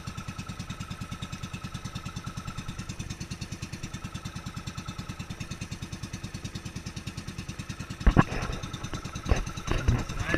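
Engine of a motorized outrigger boat running steadily with a rapid, even pulsing beat. About eight seconds in there is a sharp knock, then some irregular louder bumps over the engine.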